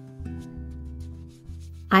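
Soft background acoustic guitar music, held plucked notes changing every second or so. A woman's voice begins right at the end.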